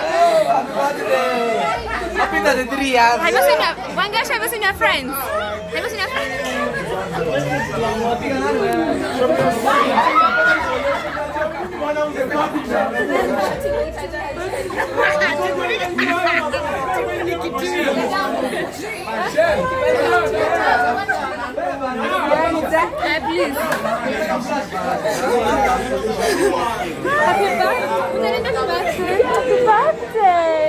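Several people talking over one another at once: lively overlapping chatter from a group.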